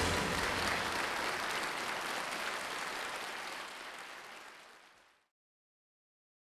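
Audience applause fading out, gone to silence about five seconds in.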